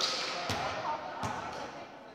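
A volleyball thudding three times against the hardwood gym floor or players' hands, each hit ringing on in the echo of the large hall.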